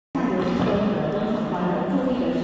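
Many young children chattering and talking at once in a large school gymnasium, a steady crowd babble with no single voice standing out.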